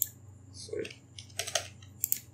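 A few separate keystrokes on a computer keyboard as a number is typed into a field.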